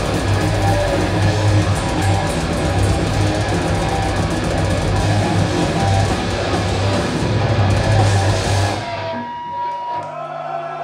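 Death metal band playing live at full volume, with distorted electric guitars, bass and drums. The song cuts off about nine seconds in, leaving a single held tone ringing.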